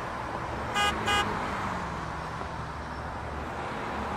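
Steady city road traffic noise, with a vehicle horn tooted twice in quick succession about a second in, two short toots that are the loudest sounds here.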